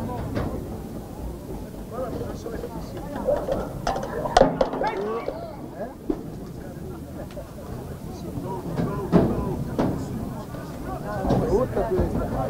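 Indistinct talk and chatter of spectators close to the microphone, with a single sharp knock about four seconds in.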